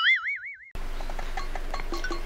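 A cartoon 'boing' sound effect: one springy tone whose pitch wobbles up and down and fades out within the first second. It is followed by soft background music of short, light notes.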